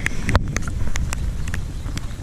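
Wind buffeting the microphone as a steady low rumble, with a few scattered light ticks.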